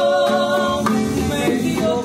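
Live acoustic Cuban son-style performance: a woman singing long held notes with men's voices joining in harmony, over a strummed acoustic guitar and bongos.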